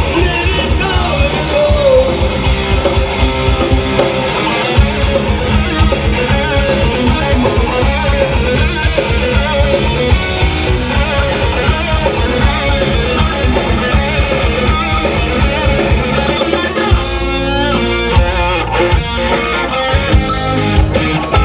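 Live rock band playing loudly through a PA: electric guitars, bass guitar and drums, with the band moving into a new section near the end.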